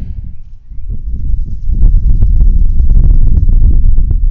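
Wind buffeting the microphone outdoors: a heavy, loud low rumble that builds about a second in, with a run of rapid crackles through the middle.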